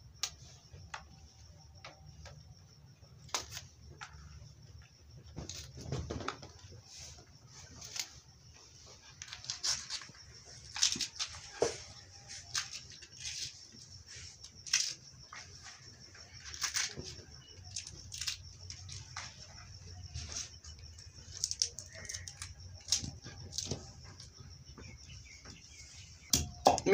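A kitchen knife slicing green chillies over a clay mortar, making light, irregular clicks and taps as the blade cuts and the pieces drop into the bowl. A faint steady high hiss runs underneath.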